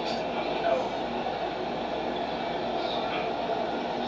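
Steady noise inside a car cabin with the engine idling, and a faint voice about three seconds in.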